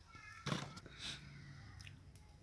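A cat meowing briefly near the start, a short high call, followed about half a second in by a sudden knock, the loudest sound, with fainter small clatters after it.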